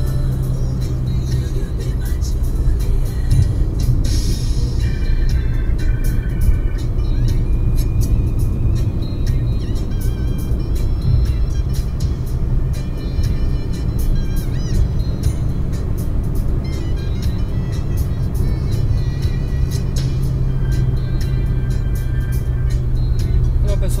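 Steady road and engine rumble inside a car cruising at highway speed, with music playing over it.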